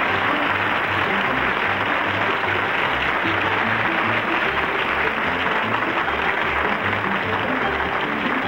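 Studio audience applauding steadily over the show's music, with a bass line underneath.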